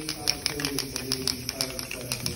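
Aerosol spray paint can being shaken, its mixing ball rattling in a quick run of sharp clicks.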